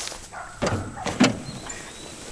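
Riding lawn tractor's small engine running as it approaches.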